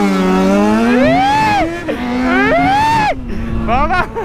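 Yamaha XJ6's 600 cc inline-four motorcycle engine, running an open exhaust, accelerating hard from a standstill. The pitch climbs and drops sharply at two upshifts, about one and a half seconds apart.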